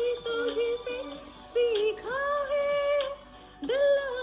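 A woman singing a Hindi film song solo over a video call, in short phrases with one long held note in the middle.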